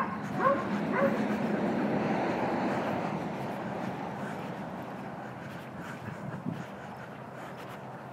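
A doodle gives two brief whimpers, about half a second and a second in, over the steady noise of passing road traffic, which is loudest in the first few seconds and then fades away.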